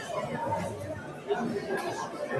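Indistinct chatter of many people talking in a large hall.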